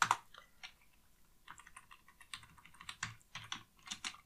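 Typing on a computer keyboard: a run of light, quick keystrokes, a few near the start and then a busier stretch through the second half.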